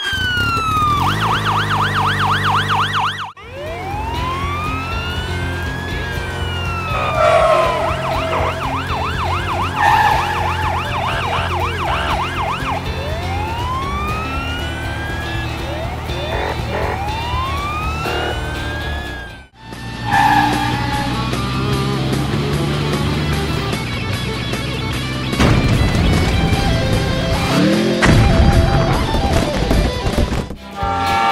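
Police siren sound effect, a fast warbling yelp at first and then slow rising-and-falling wails, over upbeat background music. About two-thirds of the way in the sound breaks off briefly, and the music carries on busier, with a steady beat.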